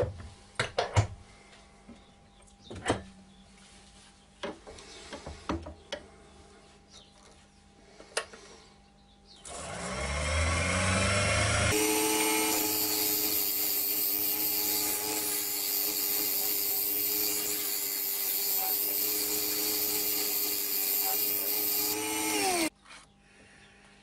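A few light clicks and knocks, then a wood lathe starting up about ten seconds in, its motor rising in pitch. For about ten seconds a round carbide-tip scraper shaves hard oak over the lathe's steady hum, before the lathe winds down near the end.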